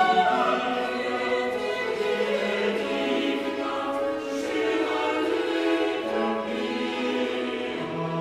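Choir singing with a Baroque orchestra in a French Baroque grand motet, several voice parts and instruments moving together at a steady full level.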